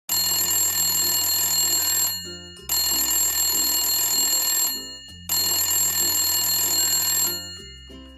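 A telephone ringing three times, each ring about two seconds long with a short gap between, before it is answered.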